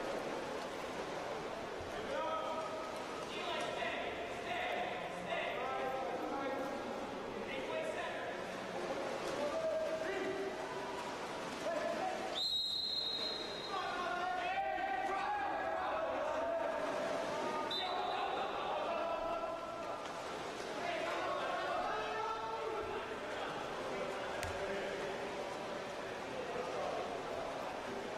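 Water polo game in an echoing indoor pool hall: players' voices calling out throughout, with a referee's whistle blast of a little over a second about halfway through and a shorter whistle about five seconds later.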